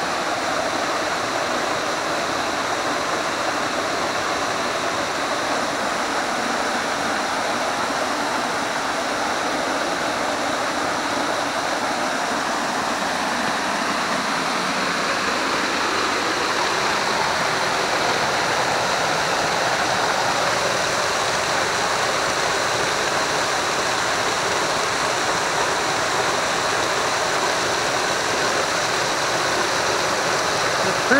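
Schoolhouse Falls, a waterfall pouring steadily over a rock ledge into a shallow pool, heard up close from beside the falling water. The rush grows a little louder and brighter about halfway through.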